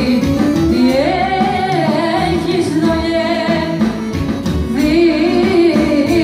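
Live Greek folk dance music played loud through PA speakers: a singer's ornamented melody over clarinet and band accompaniment.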